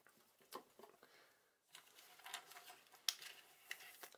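Faint clicks and rustling of small items being handled and set down on a wooden table, with a sharper click about three seconds in.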